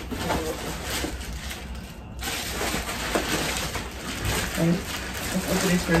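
Cardboard shipping box flaps being opened, then plastic packaging bags of clothing rustling and crinkling as they are handled.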